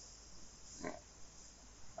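A very quiet pause in a man's talk, with low room tone and one faint short noise about a second in.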